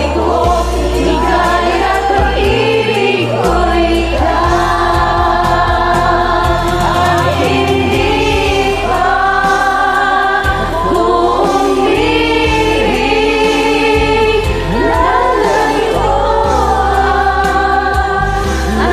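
A group of men and women singing a slow song together in harmony, the voices layered as a multi-track choir, over an accompaniment with low bass notes.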